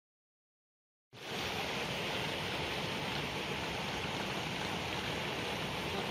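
Silence, then about a second in a steady, even rushing noise of outdoor ambience begins abruptly and carries on unchanged.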